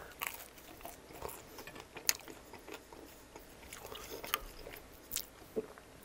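Close-up chewing of a mouthful of sauce-dipped pizza crust: soft, wet mouth sounds with a few sharp clicks.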